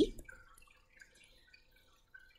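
Almost silent, with a few faint, scattered light ticks, after the tail of a spoken "uh" at the very start.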